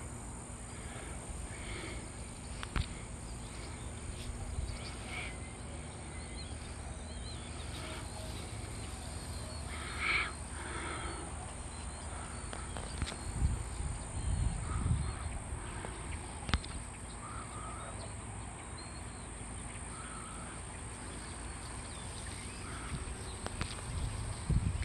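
Quiet outdoor ambience with a few faint, scattered animal or bird calls, the clearest about ten seconds in, along with a couple of sharp clicks and some low rumbles in the middle.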